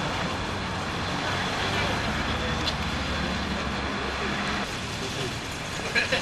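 City street traffic noise: a steady hum of passing cars, with a deeper vehicle rumble in the middle that drops away about four and a half seconds in, and people's voices faint underneath.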